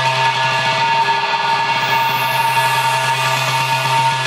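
Tech-house DJ mix in a breakdown: the kick drum drops back, leaving sustained synth chords. A hissing sweep falls in pitch about halfway through, before the beat returns.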